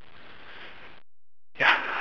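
A faint hiss for about a second, then a man says "yeah" near the end.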